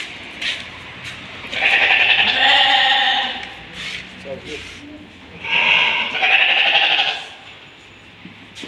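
Sheep bleating: two long, loud bleats, the first about a second and a half in and the second near the end.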